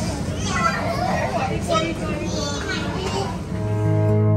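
Indistinct voices and children's chatter over a busy background hum, then acoustic guitar music starts shortly before the end.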